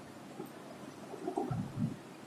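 A marker writing on a whiteboard: a few faint, short strokes, clustered in the second half.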